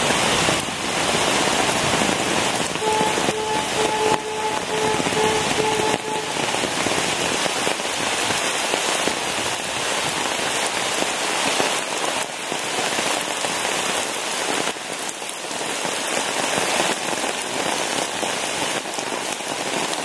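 Heavy rain pouring down steadily onto canal water and wet pavement, a dense, even hiss of splashing that never lets up.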